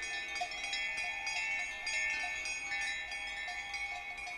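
Pre-recorded electronic part of a piece for pipa and tape, playing on its own: many quiet, overlapping chime-like tones ringing on, with light bell-like strikes scattered through.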